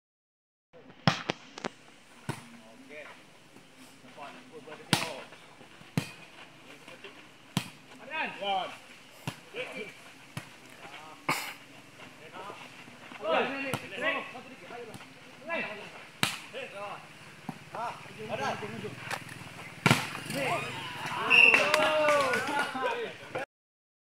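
A volleyball being struck again and again in a rally: sharp single slaps of hands and forearms on the ball, a second to several seconds apart, with players and onlookers calling and shouting between the hits.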